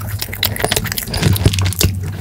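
Close-miked chewing of a chocolate-coated marshmallow snack cake (Choco Pie): many quick wet mouth clicks and smacks, over a low steady hum.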